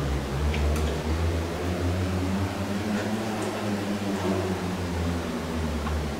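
A steady low hum made of several low tones, with a few faint clicks over it.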